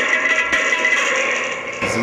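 Homemade tennis racket guitar ringing through a small strap-on amplifier: a held, buzzing note with bright overtones that sustains and slowly fades.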